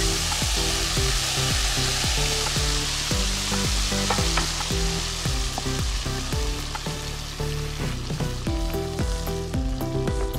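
Chana dal and milk batter sizzling as it fries in hot desi ghee, stirred with a wooden spoon. This is the start of roasting the halwa batter. The sizzle is loudest at first and dies down as the batter takes up the ghee, with instrumental music underneath.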